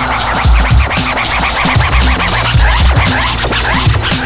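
Instrumental hip hop beat: a kick drum and hi-hats in a steady breakbeat, with turntable scratching over it.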